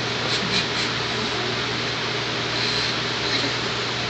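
Steady room noise: an even hiss over a low hum, with a short laugh at the start.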